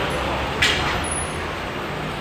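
Steady background road-traffic noise, a low rumble under an even hiss, with one brief sharp higher sound about half a second in.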